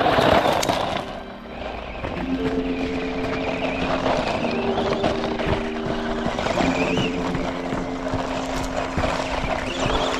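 Small electric RC car's motor whining as it revs up and down, with a thump right at the start, over background music with held chords.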